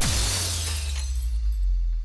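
Glass-shatter sound effect for a breaking logo: a sudden crash of breaking glass whose high, crackling debris fades away over about a second and a half, laid over a deep low boom that lingers.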